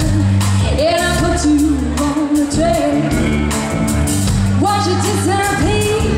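Live pop-rock band playing: a woman singing a melody over electric guitar, bass guitar and drums keeping a steady beat.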